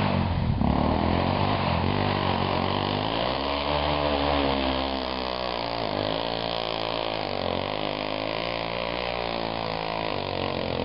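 ATV engine running under load, its pitch rising and falling as the throttle is worked while the quad drives through a muddy creek, with water splashing around it.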